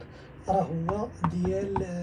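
A handful of sharp clicks or taps in the second half, over a faint low voice.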